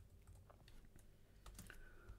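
Faint, scattered keystrokes on a computer keyboard, a few soft clicks against near silence.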